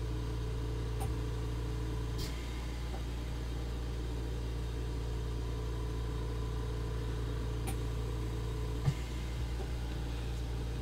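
A steady low hum runs throughout. Over it come a few faint clicks and one sharper small knock near the end, as plastic model-kit parts are handled and set together.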